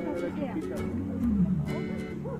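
Background music with an animal's short, wavering cries over it, and one longer falling call near the end.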